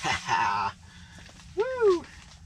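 A man's wordless excited whooping: a strained, wavering cry in the first half-second, then a short hoot that rises and falls in pitch near the end.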